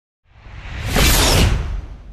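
A whoosh sound effect for a TV channel's logo animation. It swells up from silence with a deep low end, is loudest around a second in, and eases off near the end.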